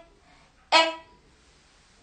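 A woman's voice saying the short vowel sound 'e' (as in egg) once, about a second in, as a phonics sound for the letter e.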